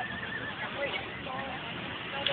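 A horse whinnying: a short, wavering high call near the start, with people's voices around it.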